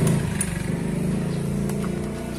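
A motorcycle engine idling steadily, its sound slowly fading.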